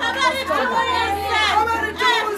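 Speech only: voices talking, more than one at once, over a steady low hum.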